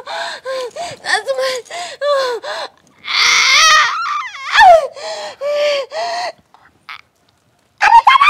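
A woman crying and wailing in a string of short sobbing cries, with a louder scream about three seconds in; the cries stop about six seconds in.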